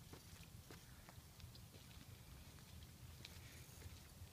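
Near silence: a faint low rumble with a few soft scattered clicks.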